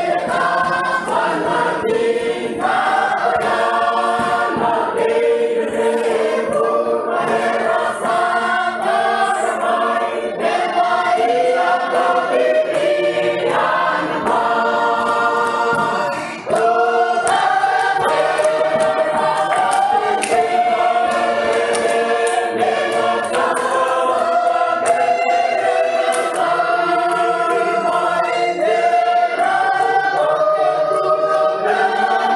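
A Fijian village church congregation singing a hymn together as a choir, several sustained parts in harmony. The singing breaks briefly between phrases about sixteen seconds in, then carries on.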